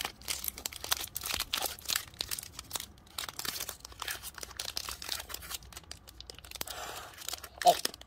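Foil booster-pack wrapper crinkling in the hands as it is handled and torn open, a run of irregular crackles.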